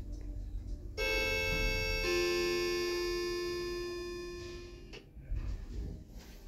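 Elevator arrival chime in a TKE e-Flex car: two electronic ringing tones about a second apart, the second lower than the first, both fading slowly over about three seconds.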